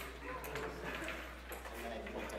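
Light clicks of wooden crokinole discs being handled on the board, one sharp click right at the start and a softer one about a second and a half in, over faint background chatter in the hall.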